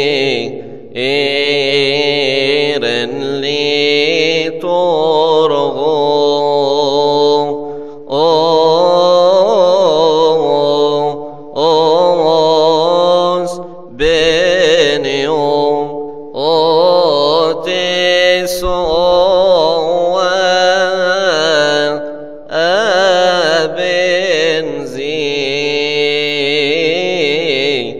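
A solo male voice chants a Coptic Orthodox hymn unaccompanied. Its long melismatic phrases waver in pitch and break off every few seconds for short breaths.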